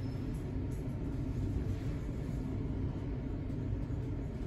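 Nippon Elevator rope-traction passenger car travelling down, heard from inside the car as a steady low rumble.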